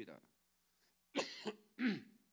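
A man clearing his throat with two short coughs, about a second in, half a second apart.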